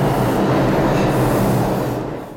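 A New York City subway train running in the station: a loud, steady rumbling noise of wheels and motors.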